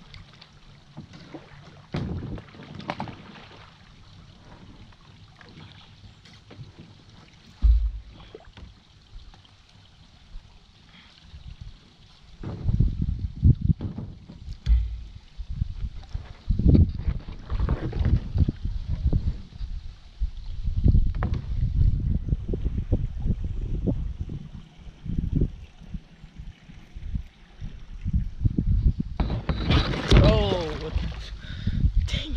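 A small boat moving on a calm river, with water and paddle sounds and a sharp knock about eight seconds in. From about halfway there is a run of irregular low thumps and rumbling as the boat comes in against a mud bank and alongside a canoe.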